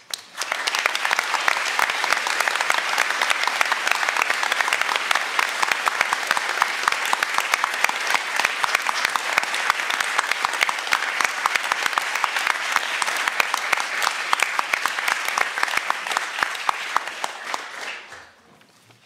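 Audience applauding: steady, dense clapping from a full hall that starts within the first second and stops at the very end.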